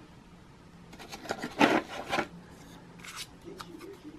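Hands rummaging in a cardboard box with a foam insert, rubbing and scraping against the packaging. There is a cluster of scratchy scrapes about a second to two seconds in, and a shorter one near the end.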